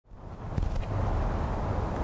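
Outdoor background noise, a low rumble with a hiss above it, fading in at the start, with a few faint clicks about half a second in.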